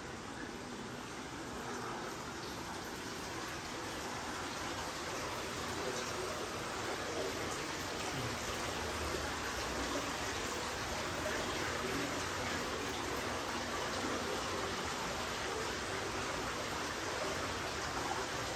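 Steady rush of running water, slowly growing louder.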